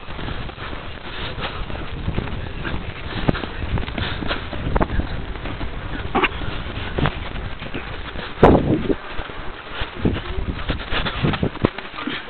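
A horse close by, with scattered short knocks and rustles and one louder burst about eight and a half seconds in, over a steady low rumble of wind on the microphone.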